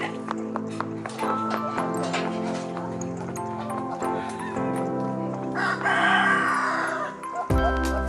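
Background music with steady held notes, and a rooster crowing once, for about a second, a little before the end; deep bass comes into the music near the end.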